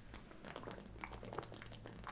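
Faint, irregular gulping and swallowing of a man drinking beer in a long swig from a glass bottle.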